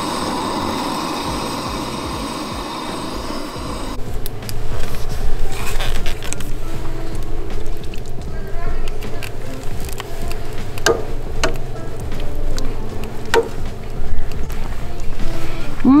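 Steady hiss of a camp stove burner under a steaming pot of soup; about four seconds in it gives way to background music with a beat.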